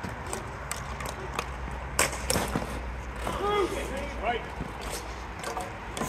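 Hockey sticks clacking against the ball and the plastic court tiles in scattered sharp knocks, the loudest about two seconds in, over a low steady hum. Players' voices shout faintly in the distance.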